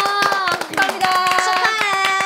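Several people clapping their hands quickly and unevenly, with women's voices holding long drawn-out cheering notes over the claps.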